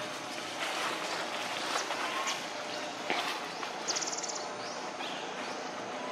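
Dry fallen leaves crackling and rustling as a baby monkey moves over them, with a few short faint chirps. A brief fast rattle of high clicks about four seconds in.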